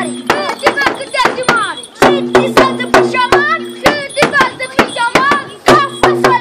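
Large drums beaten in a fast, steady rhythm of about four strokes a second for the traditional Romanian bear dance, with shouting voices over the beat.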